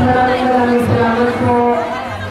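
A voice singing or chanting in long held notes over the chatter of a large crowd.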